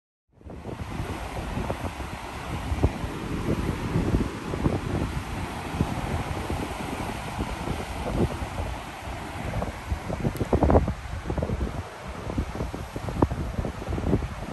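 Wind gusting on the microphone over the rush of the sea churned along the side of a moving cruise ship. It starts suddenly a moment in and carries on in uneven gusts.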